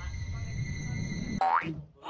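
A quick rising boing, like a cartoon sound effect, about one and a half seconds in, over a low rumble.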